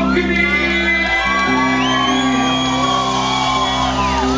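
Live rock band music: a sustained chord holds under a long, high shouted vocal note that rises in about two seconds in and drops away near the end.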